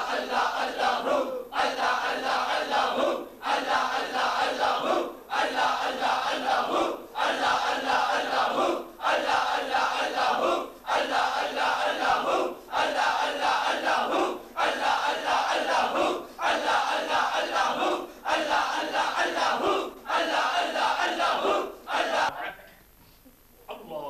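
A group of men chanting zikr together in unison, one short devotional phrase repeated in a steady rhythm about every two seconds, with a brief breath-gap between repetitions. The chanting stops near the end.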